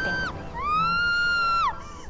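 A very high-pitched voice singing a drawn-out "wah". One note ends just after the start. Another is held for about a second, sliding up at its start and dropping off at its end.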